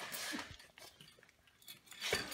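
Light metallic clinks and scraping of a breaker bar and tools against a dirt bike's frame: a brief scrape at the start, then scattered small clicks.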